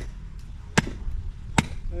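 Machete hacking into the roots of a dug-out mulberry stump: three sharp chops, evenly spaced a little under a second apart.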